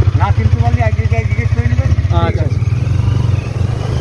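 Motorcycle engine idling steadily with a fast, even low pulse, as voices talk briefly over it.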